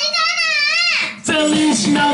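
A high, wavering sung note into a handheld microphone that slides down and breaks off about halfway through. A moment later an electronic music track starts.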